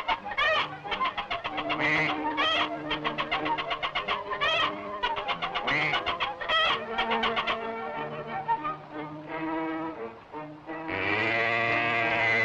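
Cartoon barnyard sound effects over an orchestral score on an early sound-film track: a rapid run of short squawks and honks from caged poultry. About eleven seconds in, a cow gives one long, loud moo as it is hoisted.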